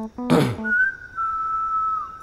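A short whoosh, then one long whistled note that steps down slightly about halfway and dips at the end, over a plucked-string music cue.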